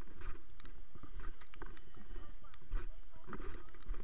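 Footsteps and splashes on a wet, muddy streamside trail, with irregular taps and knocks and a low rumble from the moving camera.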